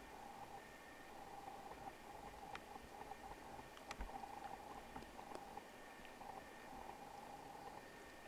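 Quiet outdoor background by still water: a faint, steady, slightly wavering high hum with a few isolated sharp clicks.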